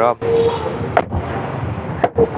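A single sharp click about a second in, the door latch of an SRM X30 V5 van as its chrome outside handle is pulled, over a steady background noise.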